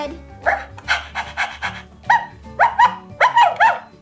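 A toy puppy's small-dog sounds: a run of quick panting, then several short rising yips, over light background music.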